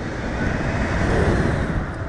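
Wind rushing over the onboard camera microphone of a slingshot ride as the capsule is launched and flies through the air: a steady, loud rush of noise.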